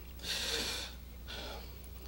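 Two breaths close to a microphone, the first louder and lasting about half a second, the second fainter about a second later, over a low steady hum.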